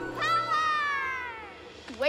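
A cartoon character's long, high scream that glides slowly downward and fades away, over background music.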